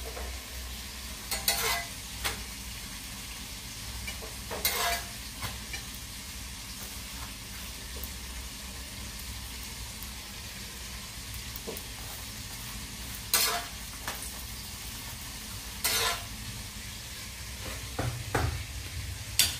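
Chapati cooking on a flat pan with a steady sizzle. A utensil clatters against the pan four times: about a second and a half in, near five seconds, and twice more near the end.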